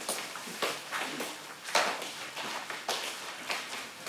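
Footsteps on a hard floor: a run of light, uneven taps, one to two a second.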